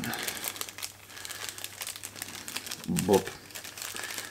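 A small clear plastic bag crinkling irregularly as it is handled and opened by hand, with a brief vocal sound about three seconds in.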